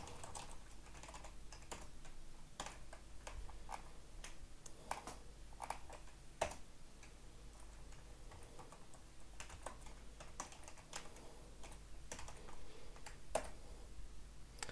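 Computer keyboard typing: faint, irregular keystrokes as shell commands are entered.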